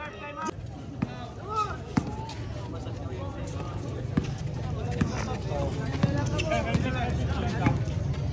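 Basketball bouncing on a hard court as it is dribbled up the floor, a few sharp bounces roughly a second apart, over crowd chatter that grows louder toward the end.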